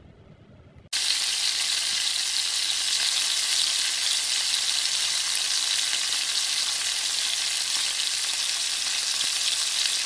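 Boiled chicken and pork pieces sizzling as they fry in coconut oil with sautéed onions and garlic in a pot. A loud, steady sizzle starts abruptly about a second in.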